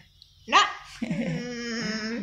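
A short spoken word about half a second in, then a long, wavering whine-like voice sound from about a second in.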